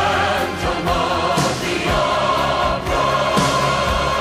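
A choir singing long held chords over instrumental accompaniment, with a few sharp percussion hits.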